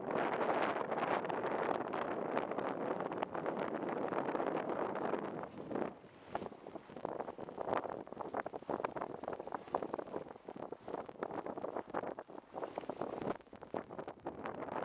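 Wind buffeting the microphone aboard a small sailboat under way, with the rush of the boat moving through the water. It is strongest and steadiest for the first five seconds or so, then comes in uneven gusts.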